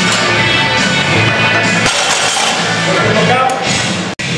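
Loud background rock music with a steady, dense sound and a vocal line.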